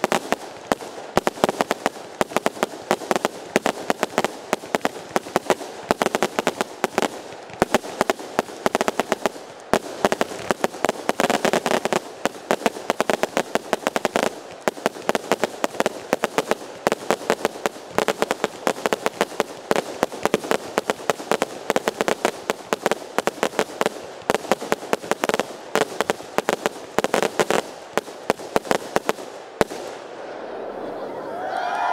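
Aerial fireworks display in a rapid, unbroken barrage: many sharp bangs a second from bursting shells, which stops abruptly near the end.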